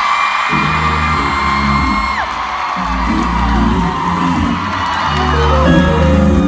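Live pop band playing through a concert PA, a bass line moving note by note, with fans in the crowd screaming in long, high-pitched whoops that rise in and fall away.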